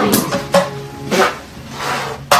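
Background music, with a few short sharp taps as toy sonic screwdrivers knock on a giant plastic surprise egg to crack it open.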